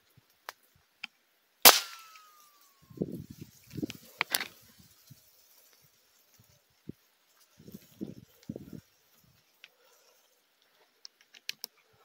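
A single .22 rifle shot, a sharp crack about two seconds in. Afterwards come footsteps crunching through dry grass and brush.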